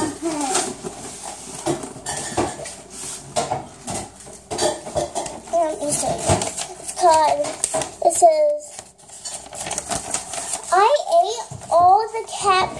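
Clinks, knocks and rustling of things being handled in a kitchen, with a few short vocal sounds about seven to eight seconds in.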